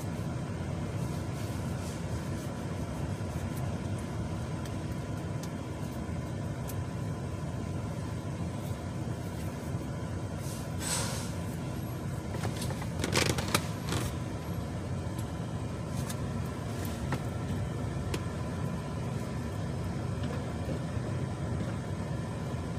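A vehicle engine idling with a steady low rumble, heard from inside a pickup's cab, with a short hiss about halfway through and a louder burst of noise a couple of seconds later.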